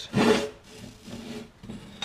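Steel pieces scraping and sliding across a steel table top as they are moved by hand. There is one loud scrape right at the start, then quieter rubbing.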